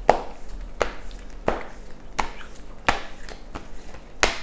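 Tarot cards being shuffled by hand, the cards slapping together in a regular rhythm of sharp taps, about one every two-thirds of a second.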